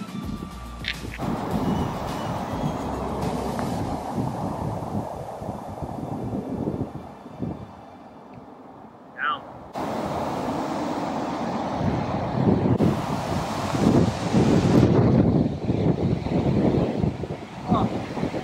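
Wind buffeting the microphone in gusts, dropping away for a couple of seconds near the middle and picking up again stronger. Background music fades out about a second in.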